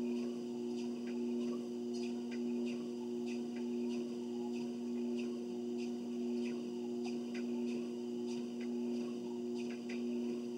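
Treadmill running with a steady two-tone motor hum, under faint, regular footfalls on the moving belt about twice a second.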